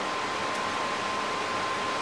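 Steady even hiss of background room noise with a faint, steady high tone running through it, in a pause between speech.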